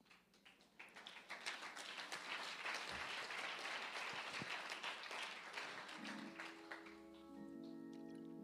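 A congregation applauding, followed about six seconds in by sustained chords played on a church keyboard.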